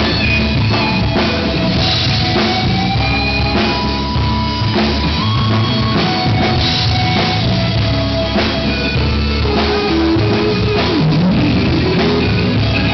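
Live rock band playing loud: an electric guitar plays a lead line of held notes, one sliding up near the end, over a Pearl drum kit keeping a steady beat.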